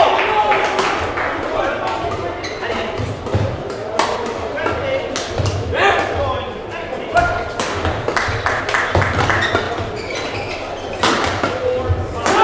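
Badminton play echoing in a large sports hall: sharp clicks of rackets striking shuttlecocks, thuds of feet landing on the court, and voices from around the hall.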